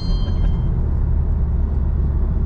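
Honda Civic Type R's turbocharged four-cylinder engine and tyre noise, heard from inside the cabin while cruising. The engine hum steps down slightly in pitch right at the start.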